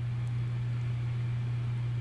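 Steady low background hum with a faint hiss over it.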